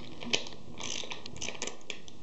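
An 18 mm metal socket being fitted onto and turned on the hex retaining nut of a plastic data logger enclosure: a sharp click, then a run of quick, irregular metallic clicks and rattles.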